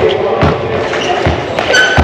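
A handball striking the goal and bouncing on a wooden sports-hall floor: a few dull impacts that echo in the large hall, with a brief shoe squeak near the end.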